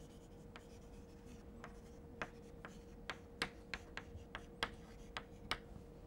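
Chalk writing on a blackboard: a quiet, irregular run of short sharp taps and scratches as the letters are formed, over a faint steady hum.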